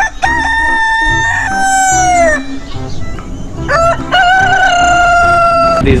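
Rooster crowing twice: two long, held crows with a short pause between them, the first sliding downward at its end.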